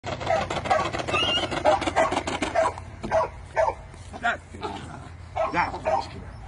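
Young puppy barking in short, high yaps as it lunges on its line at a swung bite sleeve, in quick succession at first, then spaced about half a second apart.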